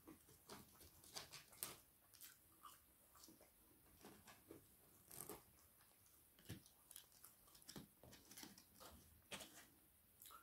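Faint chewing and mouth sounds of a person eating chips by hand, a scatter of irregular soft clicks.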